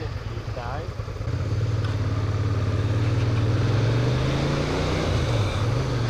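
Motorcycle engine pulling away from a standstill. The revs climb steadily for a few seconds, dip slightly, then pick up again near the end, with wind and road noise building as the bike gathers speed.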